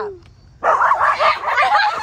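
A dog barking and yipping in a rapid, jumbled run starting about half a second in, mixed with children's voices.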